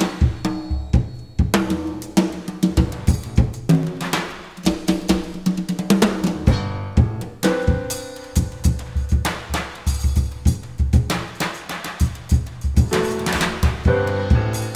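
Jazz drum kit and hand percussion playing a dense run of strikes and fills, with piano chords held underneath.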